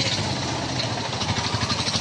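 Slow, congested road traffic with engines running close by, including auto-rickshaws, and a rapid, even pulsing from a nearby engine.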